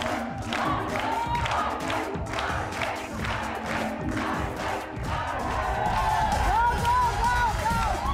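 Upbeat dance music with a steady beat, about two beats a second, playing for a musical-chairs-style party game, with a studio crowd and players shouting and cheering over it.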